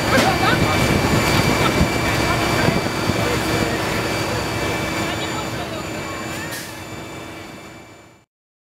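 Steady whine and rumble of a jet aircraft's turbine running, with several high steady tones in it and people's voices faintly over it; it fades out near the end.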